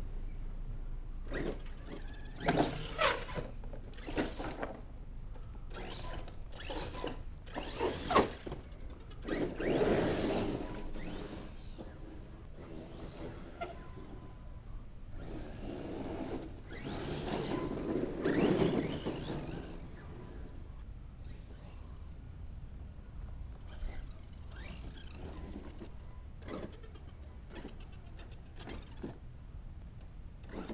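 Redcat Landslide 4S RC monster truck driving on dirt: its electric motor whines up and down with the throttle, with tyre and gravel noise. Several short sharp knocks come in the first third, and the motor is loudest in two longer runs, about a third of the way in and again a little past halfway.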